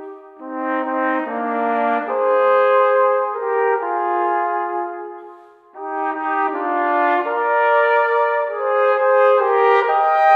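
Two brass instruments playing a slow folk-style tune in two-part harmony, in held notes and phrases, with short breathing breaks just after the start and a little before six seconds in.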